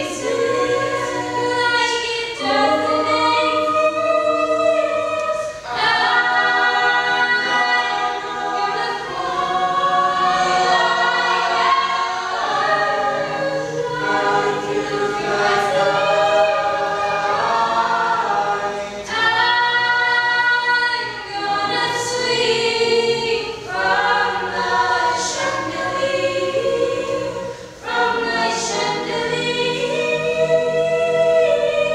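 Teenage mixed-voice choir singing in harmony, holding sustained chords in long phrases with short breaks between them.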